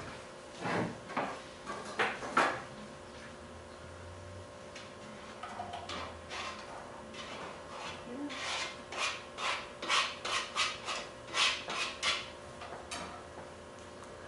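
Pots, lids and utensils knocking and scraping at a kitchen stove: a few scattered knocks, then a quicker run of scrapes and clinks, about two a second, in the second half.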